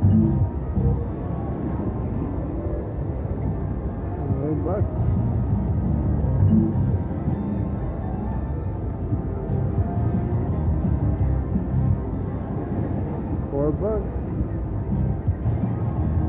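IGT Lucky Larry's Lobstermania 3 slot machine playing its game music and spin and win sounds over the murmur of voices on a casino floor. Short rising tones come twice, about a third of the way in and near the end.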